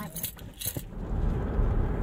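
Keys jingling, a quick cluster of light metallic clicks lasting under a second, then the steady low rumble of a car's engine and road noise heard inside the cabin.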